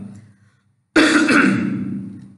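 A man clears his throat once, starting suddenly about a second in and trailing off.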